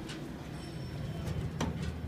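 Steady low hum inside an elevator cab, with a few faint clicks, the clearest about one and a half seconds in.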